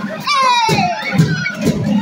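A crowd of children shouting and cheering, with a long falling-pitch whoop, over music with drums.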